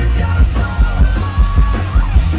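A live rock band playing loud through the festival PA: heavy kick drum and bass hitting in a fast rhythm under guitars, with a yelled vocal.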